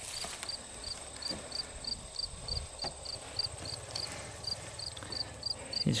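A cricket chirping evenly, about three short high chirps a second, over a thin steady high insect whine, with a couple of faint clicks from the dry grass.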